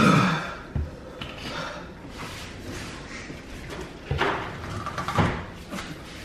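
A short vocal sound right at the start, then a few dull knocks and thumps, one a little under a second in and two more about four and five seconds in, as of objects knocked or set down on a countertop.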